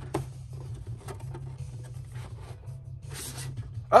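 Cardboard Funko Pop box and its plastic protector being handled: light rustling, scraping and small clicks as the box is slid out, with a louder rustle about three seconds in. A steady low hum runs underneath.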